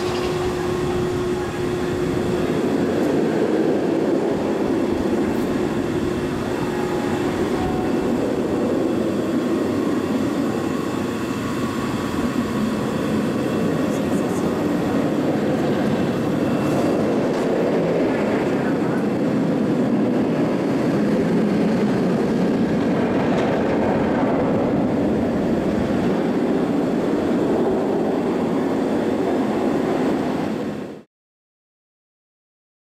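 Bolliger & Mabillard steel inverted roller coaster train running along its track with a steady, loud rumble through the whole stretch.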